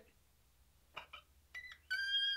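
Near silence, then near the end a man's high, thin falsetto whimper begins and is held: a mock wail of crying.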